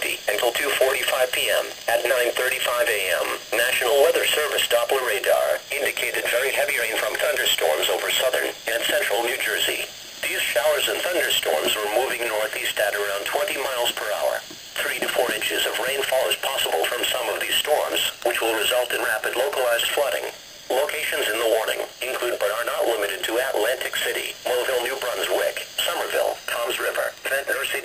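A weather radio broadcast: a voice reading out a severe weather warning through a small radio speaker. It sounds thin, with almost no bass and a steady hiss behind it.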